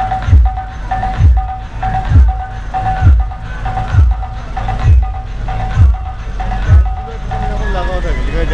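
Dance music played loud through a DJ truck's sound system, with heavy bass, a deep kick thump a little under once a second and a short high note repeating between the beats. The bass beat drops out near the end as sliding, pitched sounds take over.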